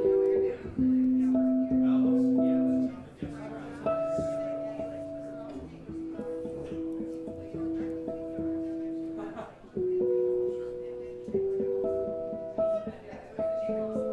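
Solo extended-range Zon electric bass plucked with the fingers, playing a slow melody of ringing, overlapping notes in its upper register over sustained chord tones. It is louder over the first three seconds, then softer.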